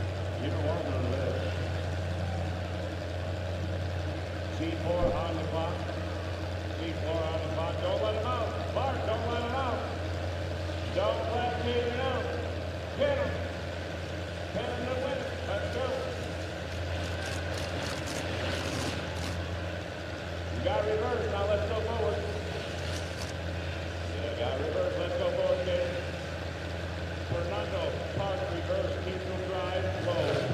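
Demolition derby cars' engines idling, a steady low drone, with voices over it. A flurry of short sharp knocks comes a little past the middle, and another shortly after.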